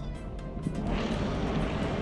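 Background music over a rushing noise that swells about half a second in.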